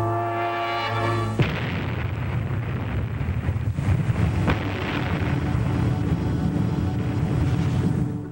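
A held orchestral chord from a 1950s film soundtrack is cut off about a second and a half in by the sudden, long noisy roar of an atomic test blast. The blast noise is heaviest in the low range, and a low steady note sounds faintly under it later on.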